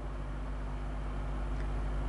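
Steady low background hum with faint hiss, no other event: room tone in a pause between speech.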